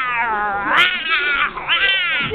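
A series of long, drawn-out meows, each rising and then falling in pitch.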